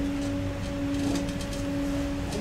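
A steady hum held on one low pitch, with a fainter tone about an octave above it, and a few faint clicks in the first half.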